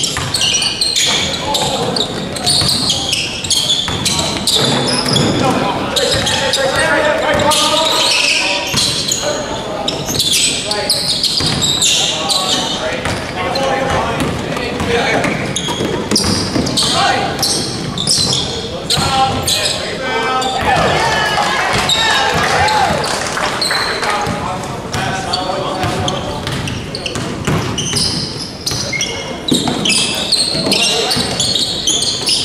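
Basketball game in a gym: the ball bouncing repeatedly on the hardwood court amid players' voices and calls, echoing in the large hall.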